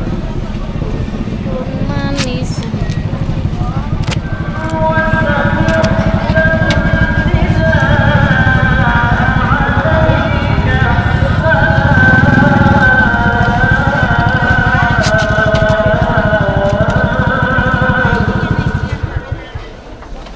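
A motorcycle engine running close by with a fast, even low throb. From about four seconds in, music plays over it, and both fall away about a second before the end.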